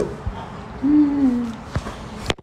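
A man's short, low hummed 'mmm' about a second in, sliding slightly down in pitch, followed by a soft click.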